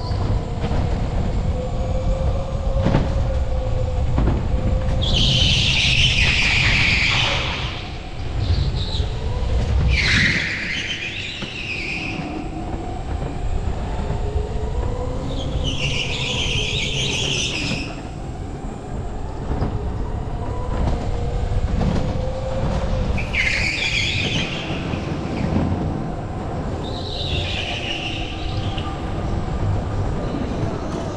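Electric go-kart running flat out on an indoor concrete track: its motor whine rises and falls with speed over a steady rumble of tyres and wind. Short bursts of high-pitched tyre squeal come through the corners, about five times.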